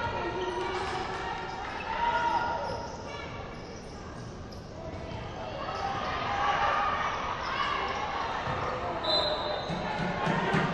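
Basketball being dribbled on a hardwood gym court during live play, with players and spectators calling out, all echoing in the large hall.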